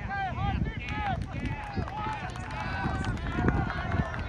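Several people shouting and calling out across an ultimate frisbee field, their voices distant and overlapping with no words clear, over a low irregular rumble of wind on the microphone.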